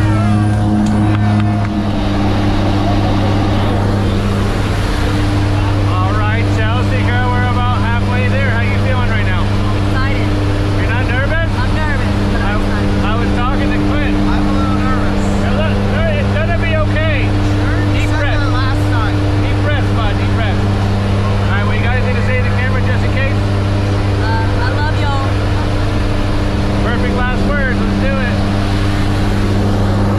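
A jump plane's engines and propellers drone steadily, heard from inside the cabin, with unclear voices of the passengers over the noise.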